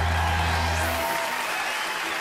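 A live band's final held chord rings out and stops about a second in, while an audience applauds throughout.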